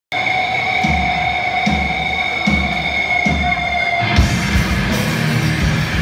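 Live heavy metal band opening a song: a held high ringing tone over slow, evenly spaced low hits roughly every 0.8 seconds, then about four seconds in the full band comes in with a dense wall of guitars and drums.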